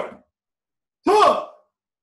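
A man's short, breathy vocal sound about a second in, falling in pitch, like a sigh, just after the end of a spoken word.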